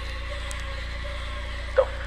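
Steady low droning hum with a haze of static hiss: the dark ambient drone under a found-footage horror film. A man's voice starts a word right at the end.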